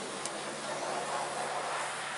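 Ford Mondeo estate tailgate released with a single light click and lifted open, over a steady hiss and faint hum.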